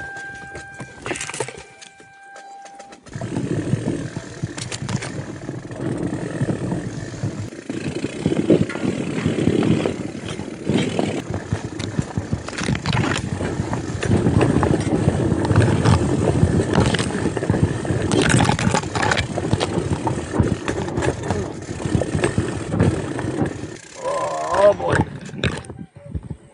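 Loaded bikepacking bicycle rolling and jolting down a rocky, brush-choked trail. It makes a continuous rattling, crunching noise with frequent sharp knocks, and branches scrape against the bike and the handlebar camera.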